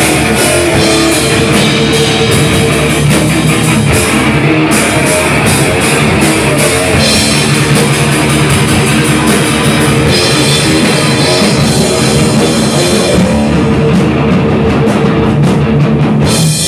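Hardcore punk band playing live at full volume: distorted electric guitars and fast drum-kit beats.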